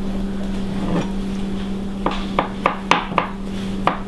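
Kitchen knife cutting soft cooked parsnip on a plastic cutting board: short sharp taps of the blade on the board, about four a second, starting about two seconds in, over a steady low hum.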